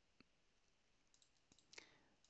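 Near silence with a few faint clicks of a computer mouse.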